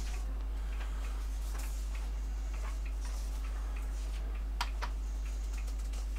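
Faint, scattered clicks from the control buttons of a portable DVD boombox being pressed, with one sharper click about four and a half seconds in, over a steady low hum.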